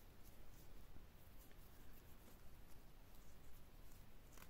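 Near silence, with faint light ticks and rustles of a crochet hook working yarn.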